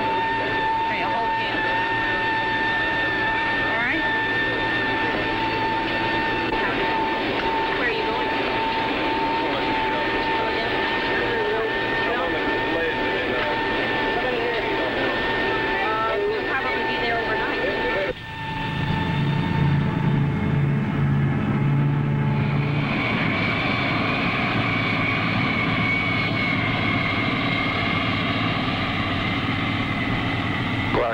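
Jet aircraft engines heard inside the cabin: a steady drone with a constant high whine. About eighteen seconds in it changes abruptly to a C-141 Starlifter's turbofan engines running on the ground. At first there is a low throbbing, then a steady high turbine whine takes over from about five seconds later.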